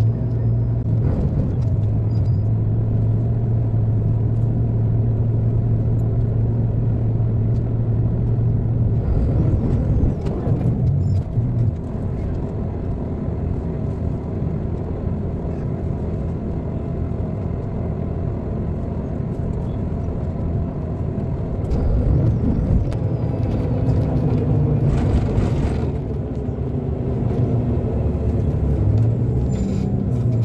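City bus heard from inside the passenger cabin: its engine and drivetrain running with a steady low hum that shifts in pitch about ten seconds in and again a little past the twenty-second mark. A brief hiss comes about twenty-five seconds in.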